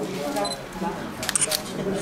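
A quick run of sharp camera shutter clicks about a second and a half in, over quiet talking in the room.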